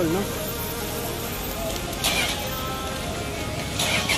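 Toyota Hiace van's diesel engine idling with a steady low rumble, under faint background music. A short hiss comes about two seconds in and again near the end.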